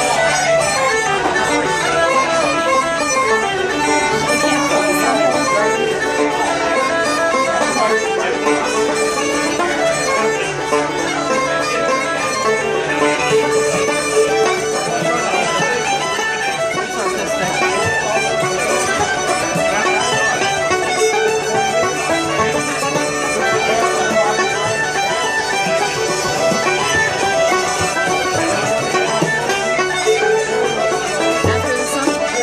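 An Irish traditional session playing a tune together, led by fiddle, with pub chatter underneath.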